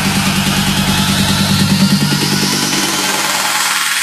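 Electronic dance music build-up: the deep bass has dropped out, and a sweep climbs steadily in pitch over a fast, buzzing, engine-like pulse.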